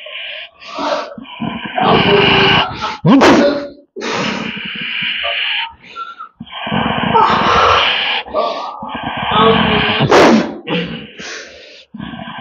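A man's loud, strained wailing and gagging in long bursts of a second or two each, with short breaks between them, as he is made to vomit.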